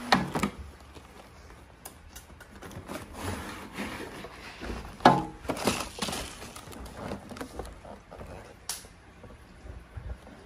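Cardboard packaging being handled: a boxed tool set slid and pulled out of its shipping carton, with rustling and scraping and a few sharp knocks, one near the start, one about five seconds in and one near nine seconds.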